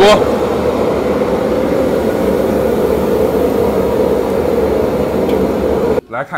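A commercial wok stove running at full flame: a loud, steady, unbroken rush of gas burner and kitchen extractor noise.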